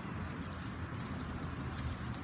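Low, steady outdoor rumble with a few faint clicks about a second in and near the end.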